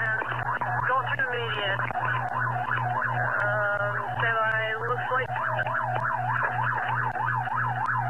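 Police car siren yelping, heard over a pursuing deputy's radio transmission; the pitch sweeps up and down about three times a second, with a second siren tone overlapping around the middle, and the sound is narrow and tinny with a low pulsing hum from the radio channel.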